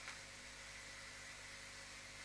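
A very quiet pause holding only the recording's faint steady hiss and low hum: room tone.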